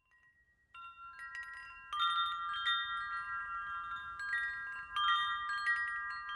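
Wind chimes ringing: a few light tones start just under a second in, then from about two seconds many overlapping strikes, each tone ringing on.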